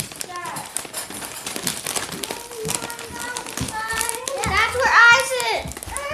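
A young girl singing, held notes that waver, getting loudest about five seconds in, over short clicks and rattles.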